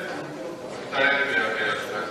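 A man speaking into a microphone, his voice loudest in the second half.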